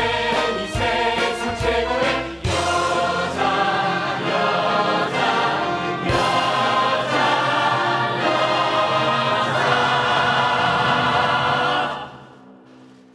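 A musical-theatre ensemble singing full-voice with a pit orchestra: a couple of seconds of punchy brass-and-drum accents, then sustained chords building to a long held final chord that cuts off sharply near the end.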